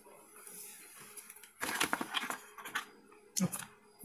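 Packaging being handled while a phone box is opened: a soft sliding hiss, then a burst of crackly rustling and crinkling lasting about a second.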